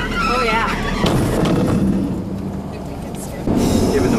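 A brief voice, then the steady noise of a vehicle's engine and wind. Near the end it jumps suddenly to louder engine and road noise from inside a moving vehicle.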